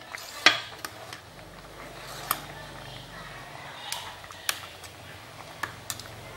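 A metal ladle clinking against an aluminium pot while foam is skimmed off boiling mung beans and peanuts. About six sharp clinks are spread irregularly over a low steady hiss.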